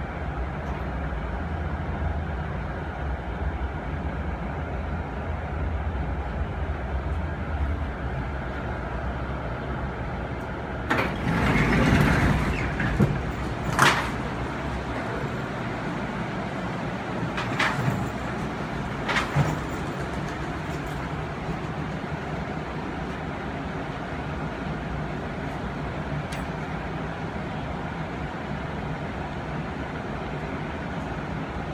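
Automated airport tram car rolling with a steady low rumble that fades as it comes to a stop about ten seconds in. Its sliding doors then open with a loud rush of noise and a sharp clunk a couple of seconds later, followed by a few lighter knocks. Then there is only the steady hum of the stopped car.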